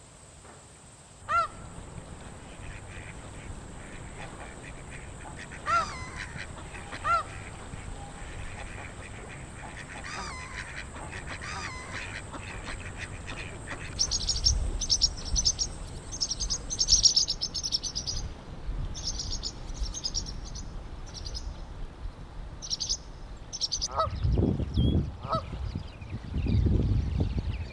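Outdoor bird recording: a few loud single honks early on, then from about halfway a quick run of high chirping, and near the end Canada geese honking. A steady high whine runs under the first two-thirds and stops.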